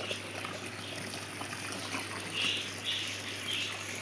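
Water from a garden hose pouring steadily into a plastic tub of millet seed, a continuous splashing trickle. A few short bird calls come through in the second half.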